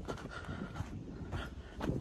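Quiet footsteps on a dirt forest path, with the walker's breathing.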